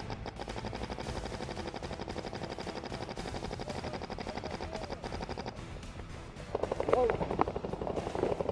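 Paintball marker firing a rapid string of shots close to the microphone, the shots coming several a second. Near the end a louder burst of shots comes together with a shout.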